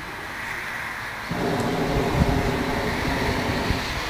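Hot-air balloon's propane burner firing overhead: a burst of about two and a half seconds that starts suddenly just over a second in and stops shortly before the end.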